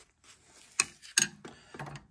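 Several light clicks and knocks in quick succession, starting just under a second in.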